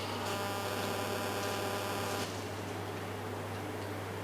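Steady electrical hum. A brighter, buzzing tone joins it just after the start and cuts off suddenly about halfway through.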